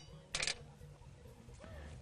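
A brief clicking rattle of small black plastic parts being handled, about half a second in, over a low steady background hum.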